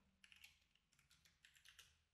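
Very faint computer keyboard typing: a quick run of key clicks that stops about one and a half seconds in.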